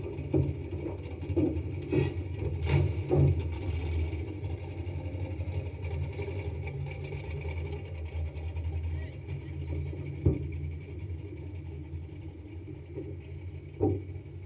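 Drag car's engine idling steadily, a low even rumble, with a few short knocks over it in the first few seconds and again near the end.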